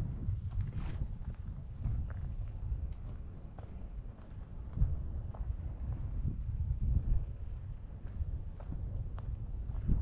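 Wind rumbling on the microphone, with faint footsteps of a person walking on a dirt and grass path.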